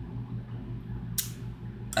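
Quiet pause filled by a steady low hum, with one short hiss about a second in.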